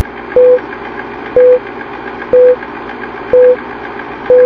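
Film countdown leader sound effect: four short, identical beeps, one each second, over a steady crackling hiss.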